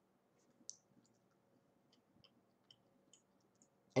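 Quiet room tone with about a dozen faint, scattered small clicks, the clearest about two thirds of a second in, over a weak steady hum.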